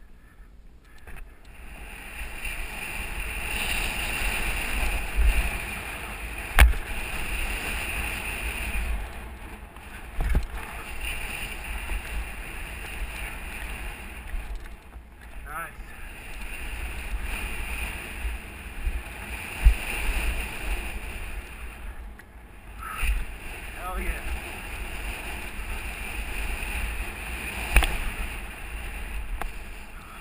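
Wind buffeting a helmet camera's microphone and the rattle of a downhill mountain bike riding over dirt, with four sharp thumps from jump landings and bumps spread through.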